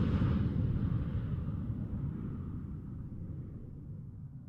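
Deep, low rumbling sound effect fading away steadily, with no distinct hits.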